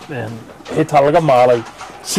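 A person's voice speaking, in words not caught by the transcript.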